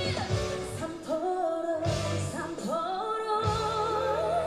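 Female vocal group singing a ballad medley live with band accompaniment, one voice holding long, wavering sung notes; low bass notes come in near the end.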